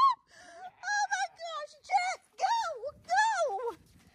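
A woman's high-pitched, wordless frightened squeals, about five short cries in a row that each rise and then fall away.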